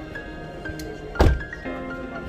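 A Chevrolet Spark's car door shutting once, a single solid thunk a little over a second in, over steady background music.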